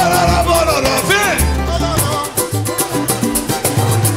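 Live pagode band playing: a singing voice over cavaquinho, acoustic guitars, pandeiro and samba hand drums with a steady bass line. The voice drops out about halfway through while the instruments keep playing.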